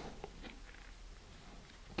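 Quiet room tone with faint small handling sounds of hands threading a shock cord through a cardboard centering ring.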